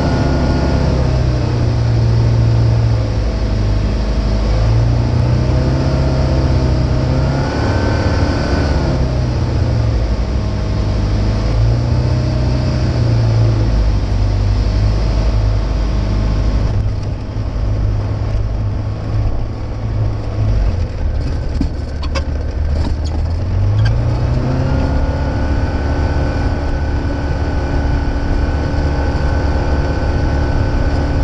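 Single-engine light aircraft's propeller engine heard from inside the cockpit, its pitch rising and falling with throttle changes on the approach. About halfway through, after touchdown on the grass strip, it drops to low power and turns rougher, with a few knocks as the wheels roll over the ground. Near the end the engine speeds up again to a steady higher note for taxiing.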